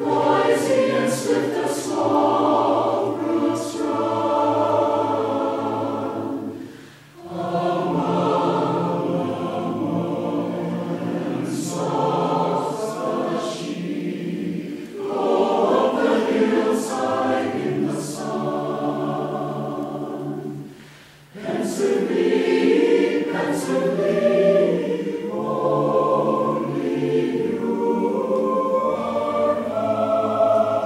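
Large mixed choir of men's and women's voices singing sustained chords in long phrases, with short pauses about seven and twenty-one seconds in.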